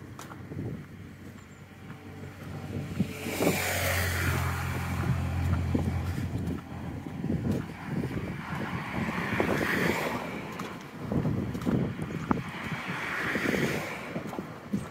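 Cars passing on the road beside the bridge footpath: one goes by about three to six seconds in, with a low engine hum and tyre noise swelling and fading, and more pass near the middle and end. Footsteps of the walker tap along underneath.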